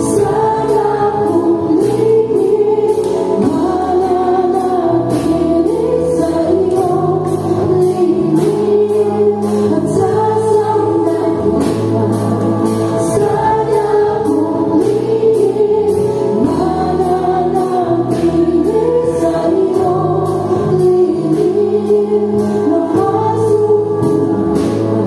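A live worship band playing a gospel song, with several singers over drums, electric bass, acoustic guitar and keyboard, and a steady drumbeat throughout.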